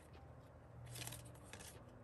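Faint rustle of a stack of photocards being flipped through by hand, one card sliding across the others about a second in, over a low steady room hum.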